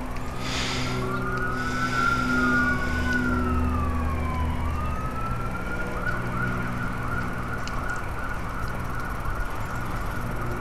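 Police sirens wailing, two slow rising-and-falling tones overlapping, then switching to a fast yelp about six seconds in. A low steady hum runs underneath.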